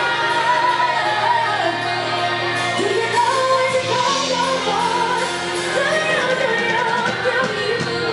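A live band playing with drums and electric guitar, a woman singing lead into a microphone, heard from within the audience.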